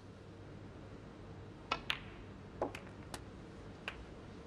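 Snooker balls clicking: two sharp clacks close together just under two seconds in, then a few lighter clicks as balls knock into one another near the end, over a faint steady room hush.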